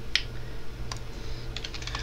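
Typing on a computer keyboard: a few separate keystrokes, then a quick run of them near the end.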